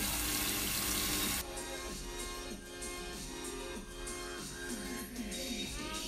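Water spraying from a salon shampoo-basin hand shower onto hair, a steady hiss that cuts off suddenly about one and a half seconds in. Background music continues after it.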